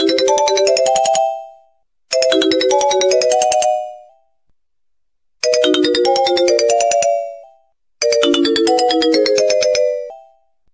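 A short electronic melody of quick stepped notes with a buzzy tone, repeated four times with brief silences between, like a phone ringtone ringing.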